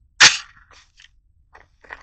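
A single sharp metallic clack from the AR pistol being readied to fire, about a quarter second in, followed by a few faint handling clicks.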